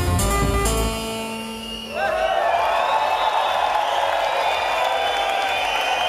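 Live electronic dance track with a heavy beat that stops about a second in, leaving a held synth tone that dies away, followed by a crowd cheering and clapping.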